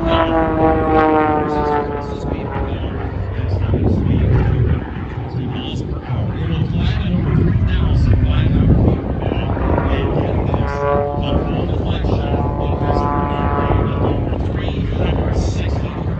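Aerobatic propeller plane's 330-horsepower piston engine running hard through its manoeuvres, its pitch sliding down over the first couple of seconds and shifting again later as the plane climbs and turns.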